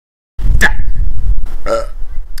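Two short, loud non-speech vocal sounds from a person, about half a second and a second and a half in, over a steady low rumble. The sound starts abruptly after a brief silence.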